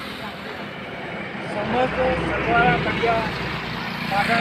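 Indistinct voices in the background over steady outdoor noise with a low rumble.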